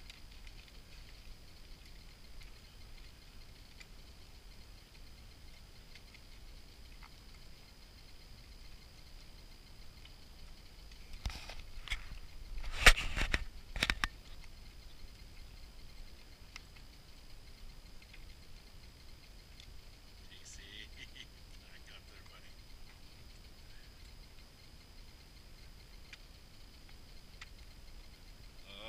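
Quiet open-air background with a faint steady high tone, broken about halfway through by a short cluster of knocks and scuffs lasting about three seconds, the loudest sound.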